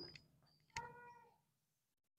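Near silence: room tone, with one faint, short cat meow about three-quarters of a second in.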